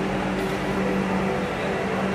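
Steady low hum inside a Vande Bharat electric train, a constant tone over an even background noise.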